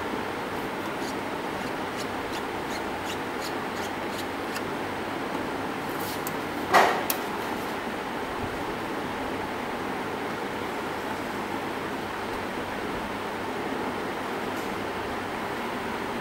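Steady room noise, a smooth hum and hiss like an air conditioner or fan. One sharp knock comes about seven seconds in, and faint ticks sound over the first few seconds.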